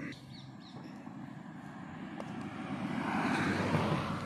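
Distant engine noise, a steady low rumble that grows louder over the last two seconds as something motorised approaches.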